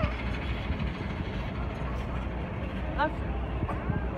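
Steady low rumble of a moving vehicle heard from inside the cabin, with a child's brief high voice sounds about three seconds in and again near the end.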